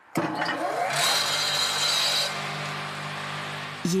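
A small electric fruit mill (Muser), an old pome-fruit grinder fitted with a new motor, switches on and runs with a steady motor hum. About a second in, a harsher, hissing noise joins for about a second and then falls back to the plain hum.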